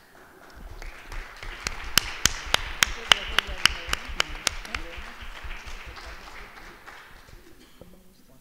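Audience applauding, with one pair of hands clapping sharply close to the microphone at about four claps a second for a few seconds; the applause dies away near the end.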